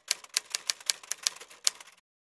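Typewriter keystroke sound effect: a quick, uneven run of key clacks, about five a second.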